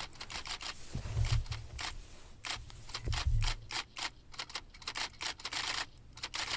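Manual typewriter keys clacking in quick, uneven runs of strokes, with two brief low rumbles about a second in and about three seconds in.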